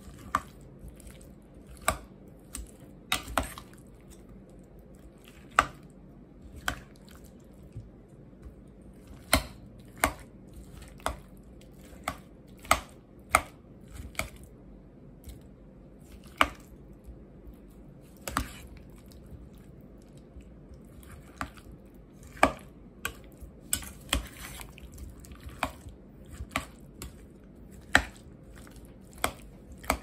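A metal spoon chopping boiled potatoes in a stainless steel pot: irregular sharp knocks as the spoon hits the bottom and sides of the pot, about one a second and sometimes two close together.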